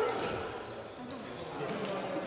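Players' voices talking in an echoing sports hall, with scattered dull knocks. A short, steady high squeak sounds about a second in.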